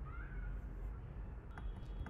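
A single short pitched cry that rises and then falls, over a steady low hum, followed by a couple of light clicks near the end.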